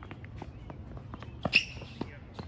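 Tennis players' footsteps scuffing on a hard court during a rally. About one and a half seconds in comes a sharp, loud tennis ball strike off a racket, followed by a brief high sneaker squeak on the court surface.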